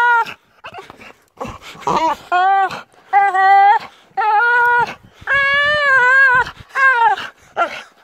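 A dog playing tug of war with a stick in its mouth, giving a string of about seven drawn-out, high-pitched whining vocalizations. Each lasts half a second to a second, and the longest comes about five seconds in.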